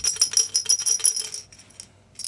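Loose pieces of a broken bulb's inner glass assembly rattling inside a hollow glass light bulb as it is shaken, a rapid clatter that dies away about one and a half seconds in.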